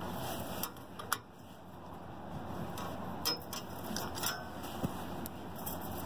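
Ratchet wrench clicking in irregular ticks as it turns the tension bolt of a mobile home tie-down anchor head, tightening the steel strap.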